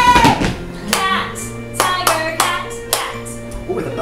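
Hand claps tapping out a short rhythm, about five sharp claps with a quicker pair in the middle, matching the word rhythm "cat, cat, tiger, cat". A steady music bed runs underneath.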